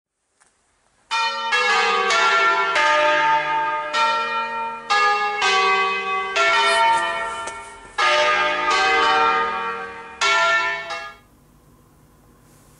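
Church tower bells ringing: several bells of different pitches struck in quick succession, their tones overlapping and ringing on. The peal starts about a second in and stops about a second before the end.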